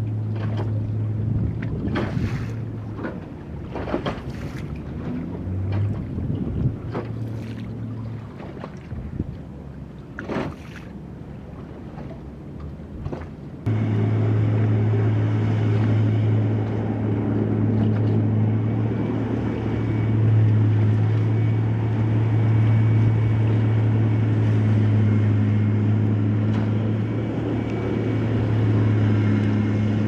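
Wind gusting on the microphone over a low steady hum; about halfway in, a sudden cut to a louder, steady low engine drone from an Amphibious Combat Vehicle swimming through the water.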